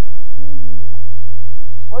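A loud, steady low electrical hum, with a faint thin high whine above it, underlying the recording; a brief voiced syllable sounds about half a second in.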